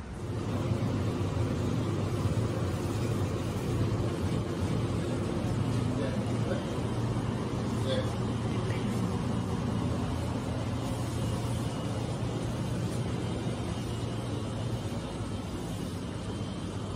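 Steady low hum with faint indistinct voices in the background.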